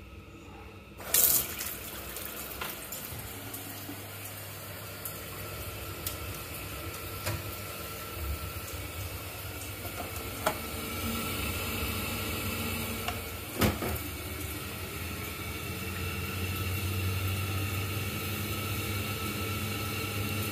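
Kitchen mixer tap opened with a click about a second in, then running steadily into the sink, drawing hot water from the combi boiler. A steady low hum runs underneath, growing slightly louder in the second half.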